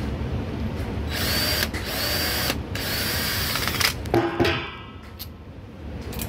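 Cordless drill driver run in three short bursts against screws in a fan coil unit's sheet-metal panel, the motor whine rising in pitch at the start of each burst, followed about four seconds in by a brief lower-pitched whirr. A steady low hum runs underneath.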